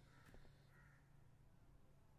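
Near silence: faint room tone with a single faint click about a third of a second in.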